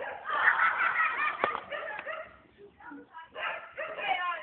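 A group of young men laughing loudly, with a single sharp click about a second and a half in; the laughter dies down after about two seconds into scattered voices.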